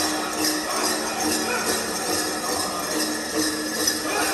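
Powwow drum group singing over a steady, even drumbeat, with the jingling of dancers' bells.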